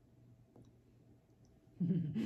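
Quiet room with faint clicks. Near the end a woman's voice starts a short, loud vocal sound.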